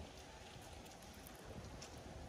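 Faint outdoor background noise with scattered light ticks.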